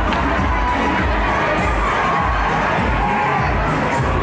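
A large crowd of adults and children shouting and cheering, steady and loud, with music playing underneath.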